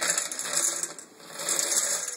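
Water squeezed out of a wet sock of soaked seeds, splashing and trickling through the seeds onto a stainless-steel colander, in two surges.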